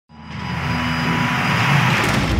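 Logo-intro sound effect: a rushing, rumbling swell of noise that builds up within the first half second and then holds, leading into the logo reveal.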